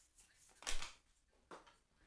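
A sheet of paper waved hard through the air, making two brief swishes about a second apart.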